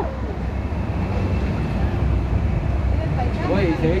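Steady rush of churning rapids water around a round river-rapids raft, with wind buffeting the microphone. Voices come in near the end.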